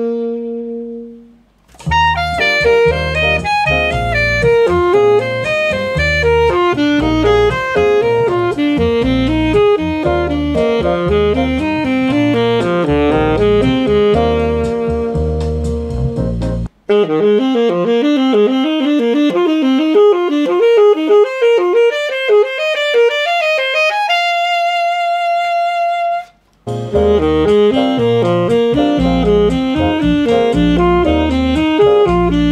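Alto saxophone playing fast jazz triad-pair patterns, first over a backing track with a bass line. About halfway through the accompaniment cuts off and the saxophone plays rising runs alone, then holds one long high note before the backing comes back in under more quick patterns.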